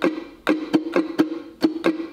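Kala ukulele strummed in a down, down, up, up, down, up pattern: about seven sharp strokes over the two seconds, each ringing on the same held chord.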